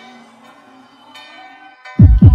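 Quiet tail of the background music: a few held tones slowly dying away as the music fades out.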